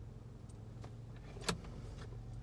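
Steady low rumble of a car's cabin while it sits idling. A sharp click about one and a half seconds in, with a couple of fainter ticks before it.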